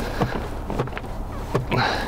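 Seatbelt webbing being pulled out and drawn across an inflatable vinyl doll, giving a few scattered rustles and light knocks over a steady low hum in a car cabin.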